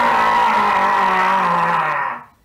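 A man's voice doing Ghostface's long drawn-out 'Wassup!' yell, a loud held cry whose pitch slowly slides down before it cuts off at the end.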